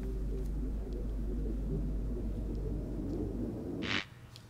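Low, steady rumbling drone from the quiet intro of a music video's soundtrack, with a short hiss just before the end, after which the drone drops away.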